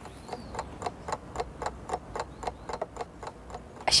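Even, rapid ticking like a clock, about five ticks a second.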